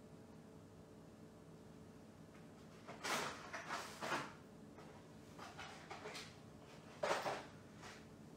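Brief handling noises off to the side, rustling and shuffling of craft supplies being moved: a few short bursts about three seconds in, softer ones after, and the loudest one about seven seconds in, over quiet room tone.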